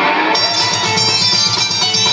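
Live rock band playing an instrumental passage, guitar to the fore over bass and drums, recorded from the audience in the hall. Brighter, higher parts come in sharply about a third of a second in.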